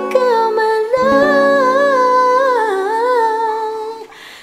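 Male voice singing a long, drawn-out note with wavering runs up and down in pitch, over ringing acoustic guitar chords; the note ends near the end.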